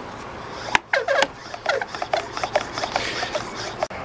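Hard plastic rubbing and clicking as the pump assembly of a plastic garden pump sprayer is worked onto its tank by the handle. There is a sharp click about three-quarters of a second in, then a run of short, irregular rasping clicks.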